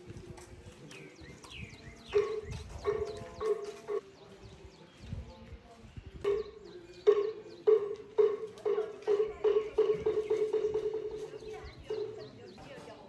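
Wooden temple block (moktak) struck with clear, hollow knocks. A few strikes come early; then the strikes resume, speed up steadily into a rapid roll and fade away. Birds chirp in short falling calls.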